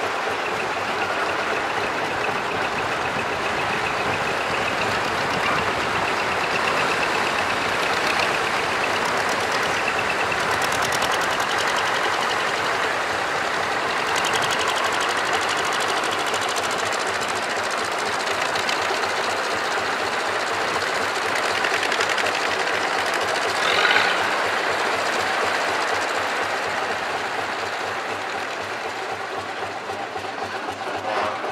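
Engines of vintage farm tractors running steadily at low speed as the tractors drive past one after another. There is a brief, louder burst late on.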